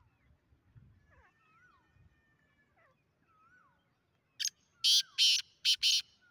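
Black francolin (black partridge) giving its loud, grating call of five harsh notes in quick succession, starting about four and a half seconds in. Before that, faint thin whistles of small birds can be heard.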